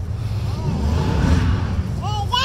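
A motor vehicle passing by: a smooth rushing sound that swells and fades over about a second and a half, over a steady low rumble.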